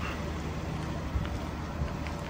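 Hooklift truck's engine idling with a low steady drone, with a couple of faint clicks over it.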